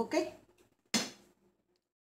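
A single sharp clack about a second in, a wooden spoon knocking against a glass mixing bowl, dying away within half a second, then dead silence where the recording is cut.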